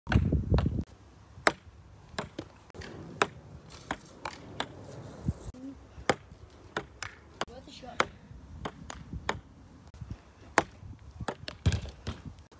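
Table tennis ball rally: sharp, short clicks of the ball striking the table and the bats, one roughly every half second to a second, some struck with a wooden plank instead of a bat. A low rumble in the first second.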